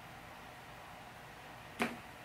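Quiet room tone, broken near the end by one short, sharp swish.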